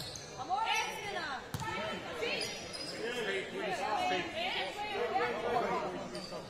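Players' and coaches' voices calling out across a large sports hall during a stoppage, with a single sharp knock about one and a half seconds in.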